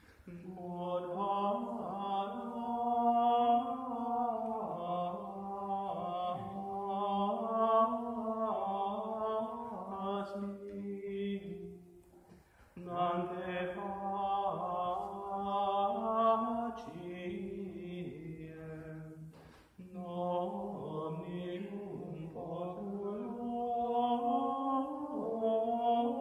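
Latin liturgical chant of the Tridentine Mass, sung without words being spoken. It comes in long phrases, broken by short pauses about twelve and about twenty seconds in.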